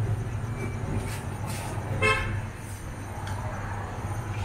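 A vehicle horn gives one short toot about halfway through, over a steady low hum and street noise.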